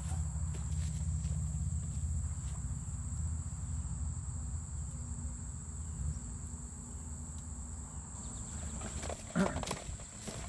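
A steady high-pitched insect drone over a low rumble of wind on the microphone, with a few faint clicks and taps as sapling poles are handled and lashed together.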